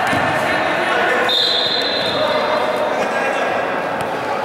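Sounds of an indoor futsal game echoing in a sports hall: players' voices and the ball and shoes on the wooden court. About a second in, a high steady tone starts suddenly and fades away over a second or so.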